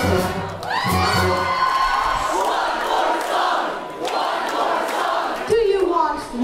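A big swing band's last notes, with brass and bass, in the first second or two, then a large crowd cheering and whooping as the number ends.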